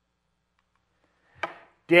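Silence for over a second, then one short, sharp mouth noise from a man drawing breath before he speaks. His speech begins right at the end.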